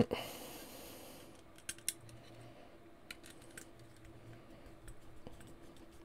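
Faint small clicks and scrapes of a screwdriver turning a long screw through a motor into a 3D-printed plastic robot chassis, the screw working into a captive nut. A soft hiss at the start and a steady faint hum underneath.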